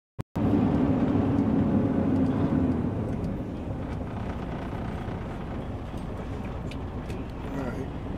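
Heavy truck's diesel engine and road noise heard from inside the cab, a steady low drone that is strongest for the first three seconds and then eases to a quieter, even level.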